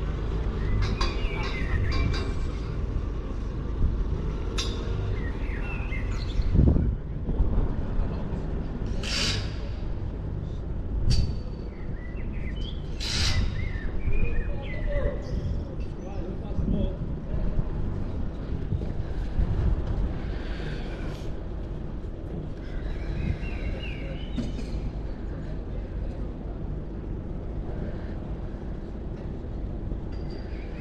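Outdoor ambience: a steady low rumble with faint voices and bird chirps, broken by a few sharp knocks or clangs about 9, 11 and 13 seconds in.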